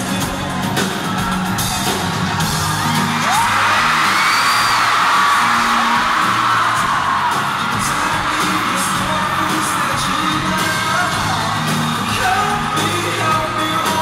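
Live pop-rock band with lead vocals and drums, recorded from within the audience. Fans scream and cheer over the music, swelling loudest in the middle.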